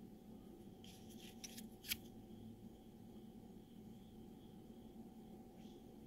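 Near silence broken by faint handling noise: a brief scratchy rustle and one light click about two seconds in, as a cardboard pog is picked up and turned over.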